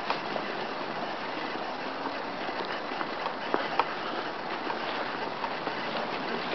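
Steady rushing of flowing river water, with a few light clicks about midway through.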